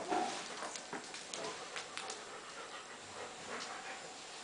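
Golden Retriever panting, with a brief whine at the start and light scattered clicks as it moves about.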